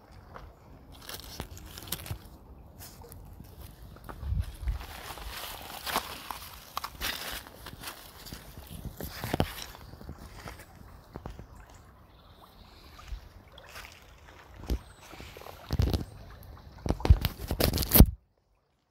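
River water rushing over shallow rapids, sloshing unevenly, with many irregular knocks and crackles that are loudest near the end. The sound stops abruptly at the end.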